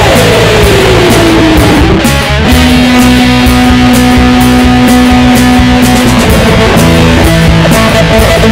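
Punk rock recording of electric guitar over bass and drums, likely part of a long guitar solo. Over the first two seconds a guitar note slides down in pitch, then a single note is held for about three and a half seconds while the drums keep time.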